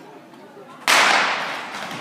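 Starter's pistol fired to start a short-track speed skating race: one sharp shot about a second in, followed by a long echo in the ice hall.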